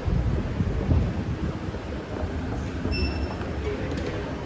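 Low, uneven rumble of a moving escalator as it is ridden down. A brief faint beep sounds about three seconds in.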